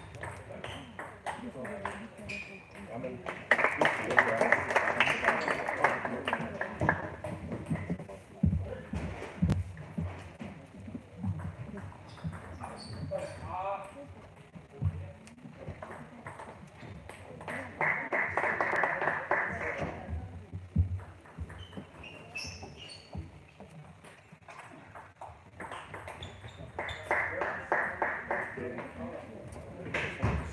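Table tennis ball clicking against bats and table in rallies, a quick series of sharp pocks, with short louder stretches of voices between points.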